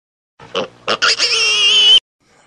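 Two short bursts of sound, then a loud, high-pitched wavering squeal lasting about a second that cuts off suddenly.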